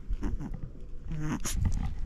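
Shih Tzu puppy making two short vocal sounds while playing at a person's feet, with a sharp click about a second and a half in.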